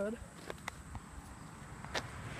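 A few faint clicks over a low, steady rumble of distant highway traffic.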